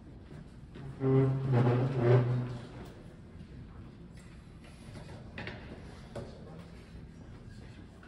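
Cello bowed in a few sustained low notes for about two seconds, a brief check of the strings before the next piece. Afterwards there are a few faint knocks and shuffles.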